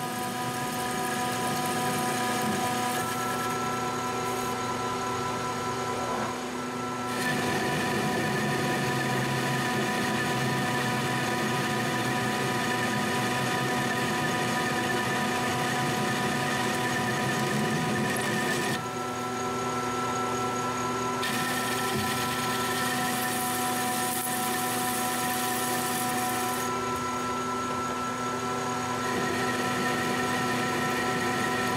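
Metal lathe running at around 440 RPM, turning a cold-rolled steel bar with a carbide-insert tool: a steady motor-and-gear whine under the noise of the cut. The sound shifts abruptly a few times, around 3, 7, 19 and 21 seconds in.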